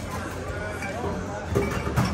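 Restaurant background: a faint murmur of voices over a steady low hum.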